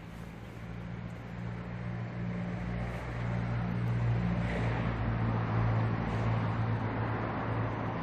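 A steady engine hum that grows louder over the first half, then holds.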